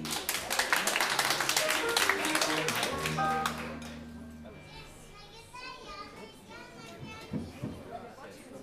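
Audience applauding over a short phrase from the jazz band, which ends in a held low chord about three seconds in. The applause dies away about four seconds in, leaving quieter voices.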